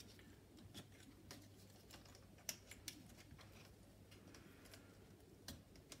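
Faint, scattered small clicks and taps of a plastic strap adapter and its strap being handled and worked around a stroller's frame bar, the sharpest about two and a half seconds in.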